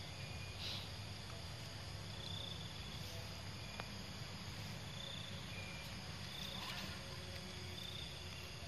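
Faint outdoor ambience of insects chirping: short high chirps repeating every couple of seconds over a low steady rumble. Two brief soft noises come about a second in and again near the end.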